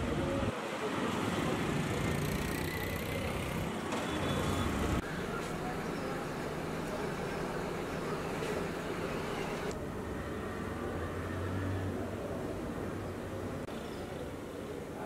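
Street traffic with auto-rickshaw engines running, cut off suddenly about five seconds in by a quieter indoor room sound.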